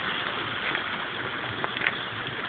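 Steady rush of water through a canal lock's overflow chamber, an even hiss with a few faint ticks.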